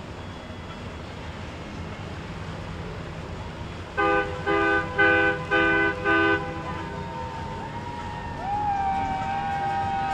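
Boat horn sounding five short blasts in quick succession, each a chord of several tones, over a steady low background rumble. A wavering, sliding tone then comes in and is held near the end.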